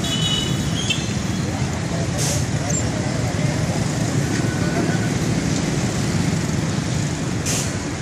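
Dense motorbike and car traffic passing close by: many small engines running together in a steady drone, with two short hisses, one about two seconds in and one near the end.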